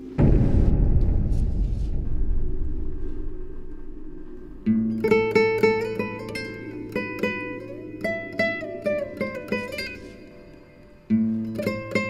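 Dramatic background score: a low boom that dies away over a few seconds, then a string of plucked guitar-like notes that slowly fade, with another low hit near the end.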